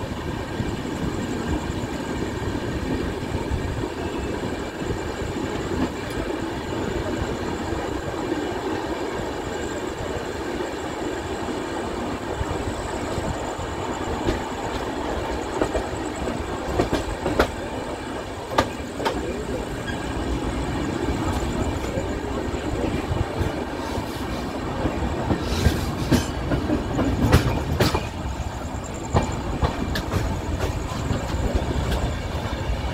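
Punjab Mail express coach running at speed, heard from its open door: a steady rumble of wheels on rail. Sharp clacks from rail joints or points come every so often in the second half and cluster near the end.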